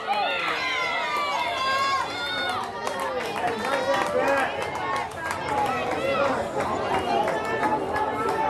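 Several high-pitched voices shouting and cheering over one another, the way players and spectators do at a girls' softball game. No single voice is clear enough to make out words.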